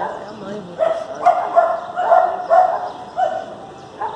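A dog barking repeatedly, several barks a second, starting about a second in and stopping a little before the end.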